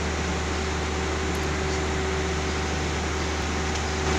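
Palm oil mill machinery running steadily at the cracked-mixture elevator's chain drive: a continuous low hum with a steady mid-pitched tone over it and an even mechanical hiss.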